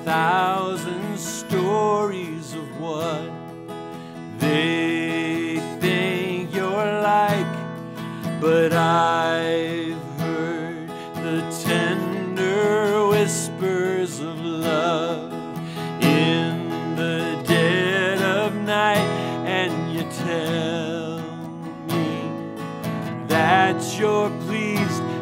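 A man singing a worship song, accompanying himself on a strummed acoustic guitar, in sung phrases of a few seconds over continuous chords.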